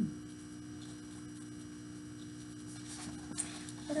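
A steady, quiet electrical hum with a constant tone. Near the end come faint rustling and a light click as the book is handled.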